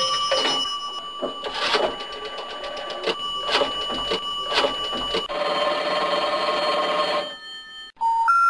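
Old telephone sound effects: a rotary dial being turned and spinning back with a run of rapid, even clicks over a steady tone, then a buzzing tone for about two seconds that cuts off suddenly.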